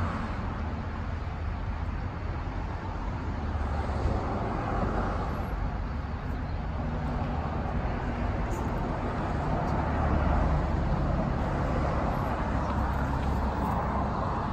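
Steady outdoor background noise with a low rumble, growing a little louder about ten seconds in; no barks or other distinct sounds stand out.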